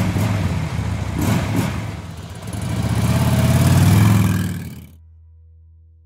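Motorcycle engine revving. It starts suddenly, gives a couple of quick throttle blips, then one longer rev that swells and cuts off about five seconds in, leaving a low hum that fades away.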